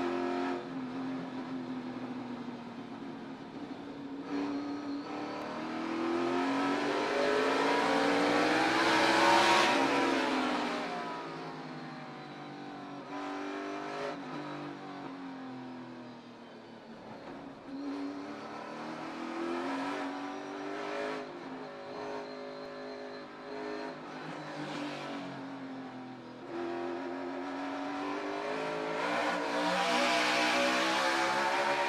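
NASCAR Cup Series stock cars' V8 engines racing on a road course. Their pitch repeatedly rises and falls as they rev through the gears and pass, loudest around nine to ten seconds in.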